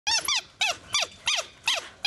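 A reddish wild canid in a zoo enclosure giving a quick series of five short, high-pitched yelps, each rising then falling in pitch. These are excited greeting calls, which zoologists take as a sign of joy at visitors returning.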